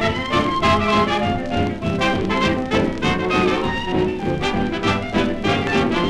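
A 1932 hot dance band playing all together in a swing ensemble passage: cornet, clarinet, saxophone, trombone and bass over a steady beat. It is heard from an unfiltered 78 rpm disc transfer.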